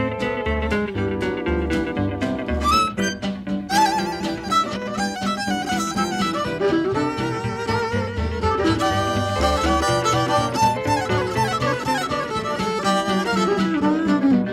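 Instrumental break in an upbeat country song: a fiddle plays the lead melody over guitar and a steady bass beat.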